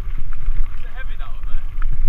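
Mountain bike rolling fast over a loose gravel track, with a heavy low rumble from wind buffeting the helmet camera's microphone and the tyres on the stones. A faint, wavering voice-like call rises over it about a second in.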